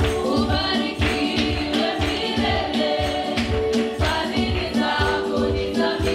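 Women's voices singing a gospel worship song through microphones, over instrumental backing with a steady beat.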